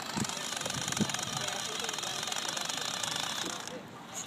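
Brushed electric motor and gear drive of a small RC-car-based robot whirring steadily with a fast, even buzz as it drives up to a traffic cone. The sound drops away just before the end as the robot reaches the cone.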